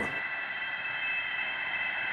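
A steady hiss with a high, even whine of several constant tones, unchanging throughout.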